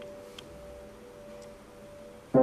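Faint, slowly fading ring of piano notes left sounding after being played, with one small click about half a second in.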